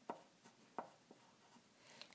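Faint pencil writing on paper: a few short, separate strokes scattered over a couple of seconds.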